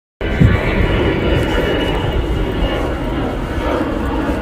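Intro sound effect: a loud, steady rumbling roar that starts suddenly just after the beginning.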